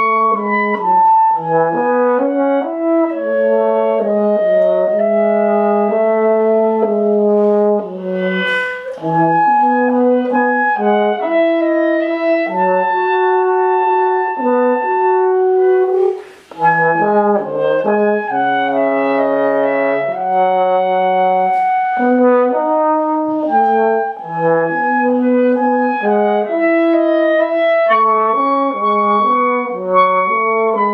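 French horn and clarinet playing a duet, the two lines moving together through held and changing notes, with a brief pause about halfway through.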